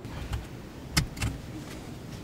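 Low, steady rumble of a stopped car heard from inside the cabin, with one sharp click about a second in.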